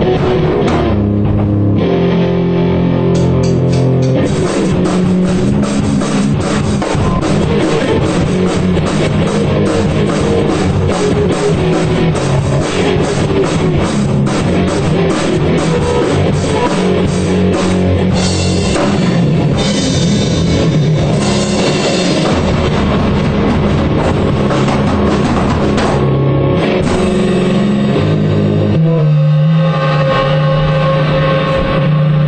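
Punk rock band playing a song: electric guitar chords over a drum kit beating steadily throughout.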